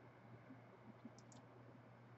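Near silence with a low steady hum, and a few faint computer-mouse clicks about a second in.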